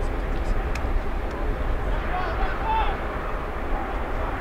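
Footballers' distant shouts and calls across the pitch, a few short cries around the middle, over a steady low rumble.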